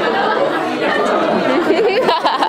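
A classroom of high school students chattering, many voices talking over one another.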